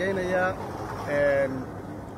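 Speech only: a man talking, with pauses between phrases.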